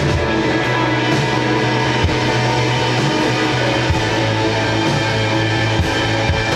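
Live rock band playing an instrumental passage without vocals: two electric guitars strummed over bass and a drum kit, loud and steady.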